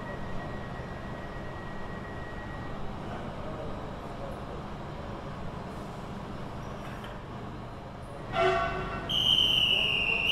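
Railway platform ambience with a steady low rumble. Near the end comes a short toot, then a loud, high-pitched train whistle held for over a second that dips slightly in pitch as it ends.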